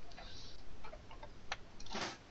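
Several faint, irregular small clicks over a quiet room background, with a short soft rustle near the end.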